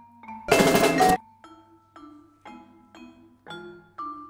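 Mallet percussion (marimba) playing a steady line of ringing pitched notes, about two strokes a second. About half a second in, a loud, dense crash of percussion that lasts under a second and cuts off sharply is the loudest sound.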